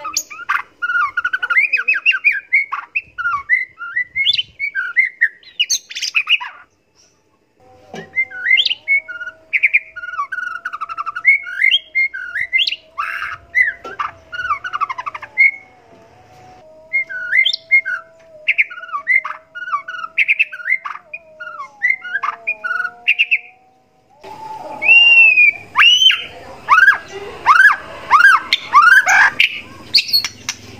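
White-rumped shama (murai batu) singing a fast, varied song of chirps, whistles and harsh notes in quick bursts, with a brief pause about seven seconds in. Near the end it gets loud, with a run of repeated sweeping whistles at about two a second.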